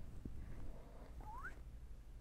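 Quiet room with a faint tap, then one short, faint rising squeak as a lemon twist is worked against the rim of a martini glass.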